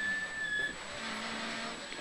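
2.0-litre Mk2 Ford Escort rally car driven at speed, heard from inside the cabin: engine and drivetrain running, with a steady high whine that stops under a second in, then a lower steady hum.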